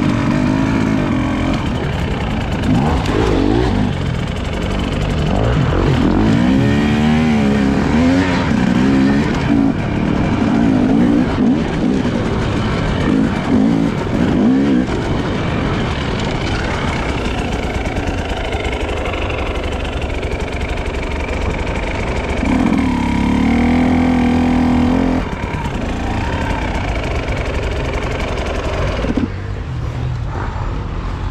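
Husqvarna enduro motorcycle engine revving on and off the throttle, its pitch rising and falling repeatedly, then held steady at high revs for a few seconds about three-quarters of the way through.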